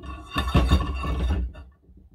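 Iron ring clamp scraping and clanking against the steel rod of a laboratory ring stand as it is fitted on, for about a second, with some faint metallic ringing.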